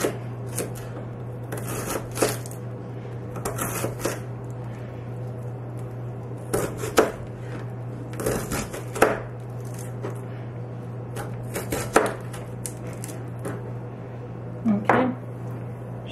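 Kitchen knife slicing cabbage finely on a plastic cutting board: irregular strokes of the blade crunching through the leaves and tapping the board, in short runs with pauses. The sharpest chops come about 7, 9 and 12 seconds in, over a steady low hum.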